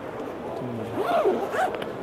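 Zipper on a LeRoy D5 fabric tackle bag being pulled open around the bag's lower compartment. The rasp comes about a second in, its pitch rising and falling as the pull speeds up and slows.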